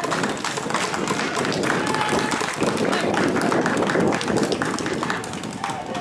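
Spectators at a baseball ground applauding: a dense, irregular patter of handclaps with voices mixed in.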